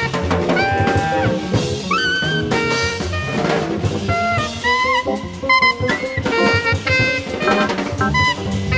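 Jazz band recording: horns play a moving melodic line over a busy drum kit.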